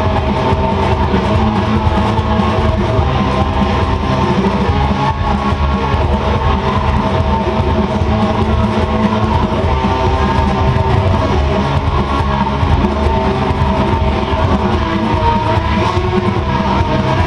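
Distorted electric guitar, an Epiphone SG through a Boss DS-2 distortion pedal, strumming fast rock chords without a break, over a loud full-band rock track.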